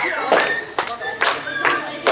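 Hand claps in a steady rhythm, a little over two a second, with voices singing along.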